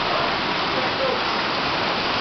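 Hail and heavy rain pelting down in a dense, steady hiss without letup.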